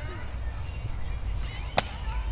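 A single sharp crack of a practice sword striking, near the end, over a steady low rumble.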